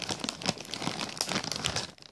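Plastic snack bag of Brownie Brittle crinkling continuously as it is handled and a piece is taken out, stopping just before the end.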